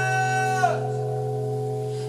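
Live acoustic song with two acoustic guitars and male vocal harmony: a held sung note bends slightly down and stops about half a second in, leaving the guitar chord ringing and slowly fading.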